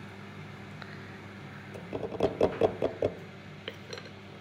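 A metal spoon knocking against a ceramic bowl of marinade: about eight quick knocks in a little over a second, near the middle, over a steady low hum.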